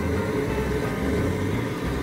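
Steady rushing rumble of a propane burner heating a large crawfish boil pot, mixed with wind buffeting the microphone in low gusts.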